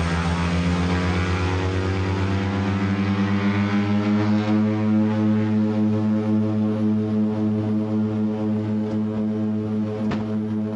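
Twin Otter DHC-6's two PT6A turboprop engines and propellers running, heard from inside the cockpit during a ground roll on a grass airstrip: a loud, steady propeller drone with a strong low hum, its hiss easing over the first few seconds.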